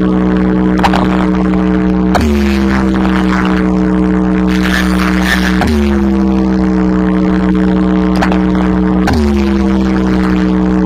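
A wall of DJ box speakers playing a loud, droning electronic tone over a continuous deep bass for a speaker check. The pitch swoops down and settles again about every three and a half seconds, three times.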